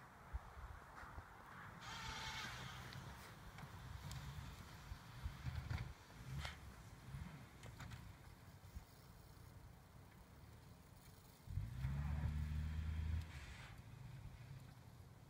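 Distant 2000 Dodge Neon plow car's four-cylinder engine labouring as it pushes heavy wet snow, faint and uneven, revving up to a steadier, louder drone for about a second and a half near the end.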